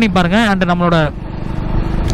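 A man talking in Tamil for about the first second, then the motorcycle he is riding running along the road, with a steady rumble and wind noise.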